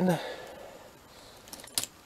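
A sharp, brief plastic click, doubled, about two seconds in, as the rubber-band-powered arm of a LEGO B2 Super Battle Droid snaps round.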